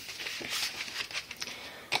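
Cardstock pages of a handmade album rustling and sliding as they are handled and folded open, with a few faint taps.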